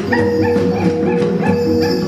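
Traditional Sikka gong-and-drum ensemble music (gong waning) playing for the Hegong dance: struck notes repeat about three times a second over a steady held tone.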